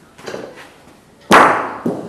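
A bocce ball struck hard by another ball: one loud, sharp clack that rings off over about half a second, followed by a lighter knock shortly after.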